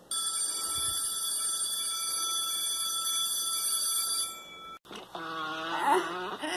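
A steady electronic ringing tone made of several high pitches held together. It sounds for about four and a half seconds, then cuts off suddenly. A high, wavering voice follows near the end.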